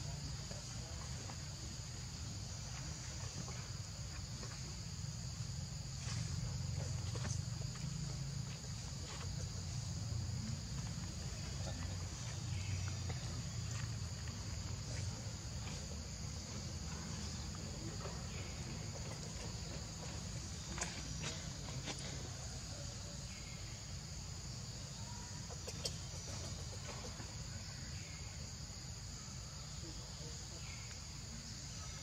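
Steady, high-pitched insect chorus of crickets or cicadas droning without a break, over a low rumble, with a few faint clicks and short chirps.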